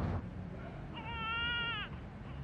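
A baby's cry heard as a recording: one short wail just under a second long, held level and then falling in pitch at the end.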